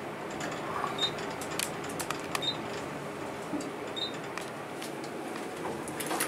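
Modernized Dover traction elevator car riding up, a steady ride noise with a short high beep three times, about a second and a half apart, as the car passes floors.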